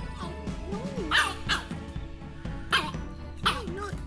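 A dog barking four times: two quick barks about a second in, then two more spaced out in the second half.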